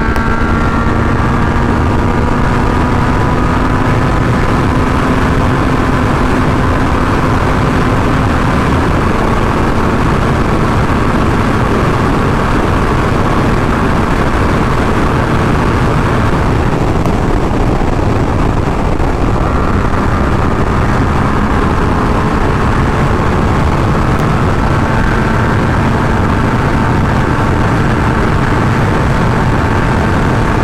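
Heavy wind rush over the microphone at high speed, with the 2017 Yamaha FZ-09's 847 cc inline-three engine note faint underneath. The engine tone climbs slowly as the bike accelerates, drops out briefly about halfway through, then comes back.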